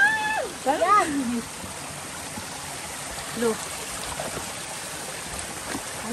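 Shallow mountain stream running over rocks, a steady rush of water. Voices call out over it at the start and again briefly about three and a half seconds in.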